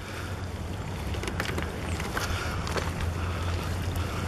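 Outdoor wind buffeting the camera microphone as a steady low rumble, with faint crunches of footsteps on loose stones and gravel.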